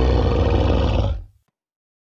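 Deep, rumbling animal growl-roar sound effect that fades out a little over a second in.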